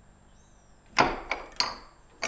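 Wire bail clasp and ceramic lid of a small stoneware crock clacking as the latch is worked: one sharp click about halfway through, then two lighter clicks in quick succession.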